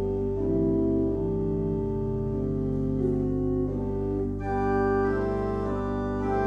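Rodgers digital church organ playing slow, sustained chords over a held low pedal note, the upper voices moving from chord to chord. Brighter, higher notes join about four and a half seconds in.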